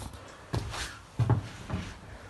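A few soft, short knocks and rustles, four in all, in a small enclosed space.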